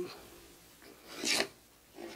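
Sugar being worked through a small wire-mesh kitchen sieve to break up lumps: one short scraping rasp of grains and utensil on the mesh a little after a second in.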